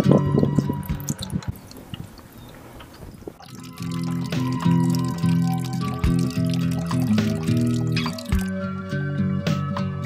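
Background music with held chords, fading out for a couple of seconds early on and then returning, over free-run red wine dripping and trickling from a bucket press's plastic spigot into a plastic bucket.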